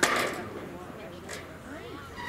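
A single sharp knock right at the start, fading within about half a second, with faint voices of people on the field and sideline.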